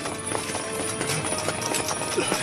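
Quick footsteps of a group of armoured soldiers hurrying across stone paving: a rapid patter of short, sharp steps, with music underneath.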